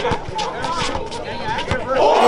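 A basketball being dribbled on an outdoor court, a series of sharp bounces a few times a second, over the chatter of a large crowd.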